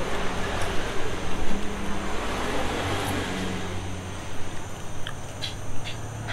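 Road traffic: a vehicle passes with a low engine hum, loudest in the first half and fading away. Near the end come a few light clicks of a spoon and fork on a plate.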